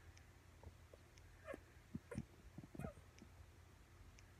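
Near silence: room tone with a few faint, brief sounds between about one and a half and three seconds in.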